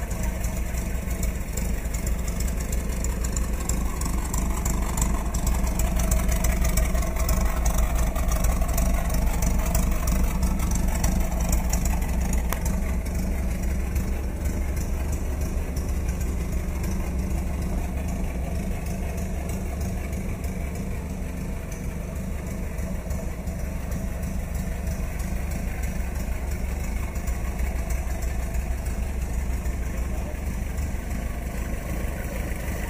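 1954 Willys pickup's engine idling steadily with the hood open.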